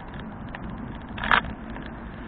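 Steady wind and road noise from a moving bicycle, heard through a cheap on-bike camera microphone. A little past the middle comes one short, loud burst of noise whose source is unclear.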